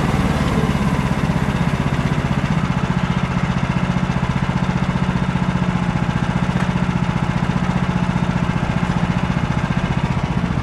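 A Woodland Mills HM130Max band sawmill's gas engine running steadily with an even, rapid throb, not under cutting load.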